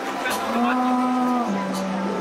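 A man singing long held notes into a microphone over his acoustic guitar, amplified through the stage PA; the held note steps down to a lower one partway through.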